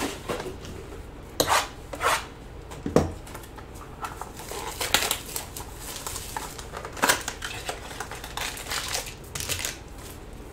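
Trading-card boxes and foil-wrapped packs being handled and torn open by hand: rustling and crinkling of cardboard and foil, with a handful of sharp snaps and knocks at irregular intervals.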